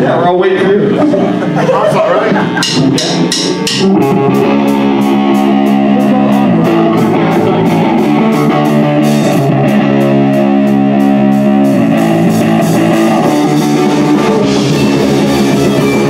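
Live punk hardcore band: after about four quick clicks around three seconds in, distorted electric guitars, bass and drum kit come in together with a loud, fast riff and steady cymbal strokes, changing riff every few seconds.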